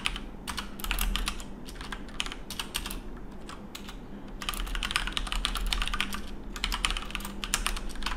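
Typing on a computer keyboard: quick runs of keystrokes with a short pause about three seconds in.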